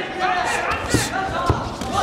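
Two sharp thuds of kickboxing strikes landing, about half a second apart, over shouting voices in the hall.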